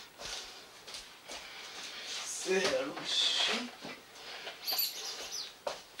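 A person's voice, quiet, making a few short sounds without clear words about halfway through.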